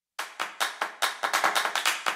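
A quick run of hand claps that starts just after a brief dropout, about five a second at first and then growing faster and denser.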